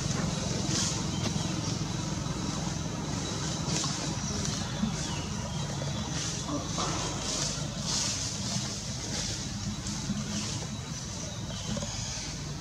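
Steady outdoor background noise: a low rumble under a hiss that swells and fades every second or so.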